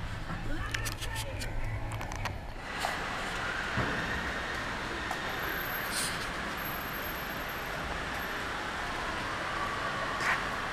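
A car moving slowly over a wet concrete car-park floor, heard from the car. Its engine hums low and a few sharp clicks sound in the first two seconds. From about three seconds in, a steadier, louder hiss of wet tyre and road noise takes over.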